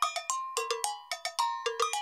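Background music cue of struck, bell-like metallic percussion: a quick, uneven run of sharp notes, each ringing briefly at a few different pitches.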